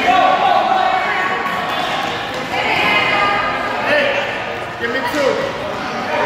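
Children's voices shouting and cheering, echoing in a gymnasium.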